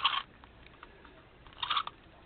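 Paper being handled and pressed down on a journal page: two short crackling rustles, one at the start and one about a second and a half later.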